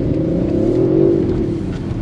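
An Audi's engine heard from inside the cabin as the driver gives it throttle to pull away on the snow course. Its pitch rises for about a second, then eases slightly.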